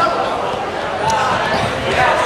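Several voices calling out at once in a gymnasium during a wrestling bout, over scattered dull thuds.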